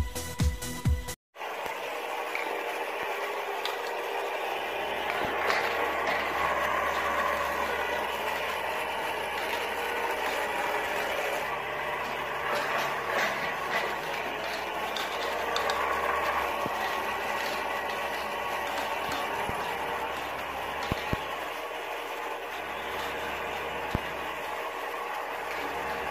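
Electronic dance music with a pounding beat cuts off about a second in. Then a toy-car race track runs: a steady mechanical whirring and rattling, with a few sharp clicks near the end.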